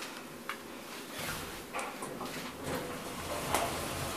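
Otis Gen2 elevator's automatic sliding doors opening at the landing, with a low running rumble and a few light clicks.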